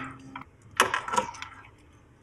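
A sharp click a little under a second in, then a few lighter knocks, as a circuit board is handled and lifted out of a metal test-fixture box.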